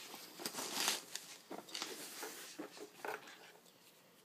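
A hand rummaging in a woven-fabric pistol case: irregular rustles, scrapes and small clicks as the pistol is drawn out, growing quieter toward the end.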